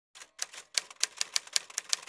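Typewriter keystroke sound effect: a quick, even run of about ten sharp key clicks, roughly five a second, as the intro text is typed out.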